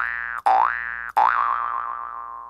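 Comedic sound effect over a title card: a pitched note that slides upward and fades, sounded three times in quick succession, the last one wobbling at the top and dying away.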